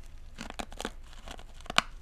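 Close wet mouth sounds on a yellow rock candy stick: lips sucking and smacking against the sugar crystals, an irregular string of short clicks with a sharper smack near the end.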